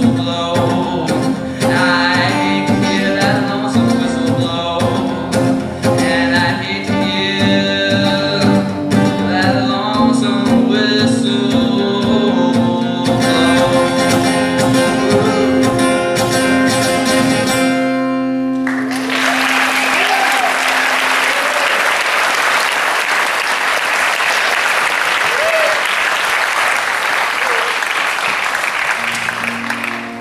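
A man singing with a strummed acoustic guitar; the song ends a little past the middle with a final chord ringing out. Audience applause and cheers follow and fade near the end.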